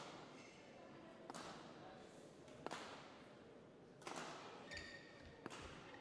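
Badminton rackets hitting a shuttlecock in a rally, faint sharp strikes about every second and a half that ring on in the sports hall, with a brief shoe squeak on the court floor about four seconds in.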